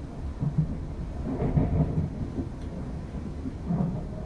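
Cabin noise of a class 350 Desiro electric multiple unit running: a steady low rumble with a few heavier low thuds and knocks, at about half a second in, around one and a half to two seconds, and just before the end.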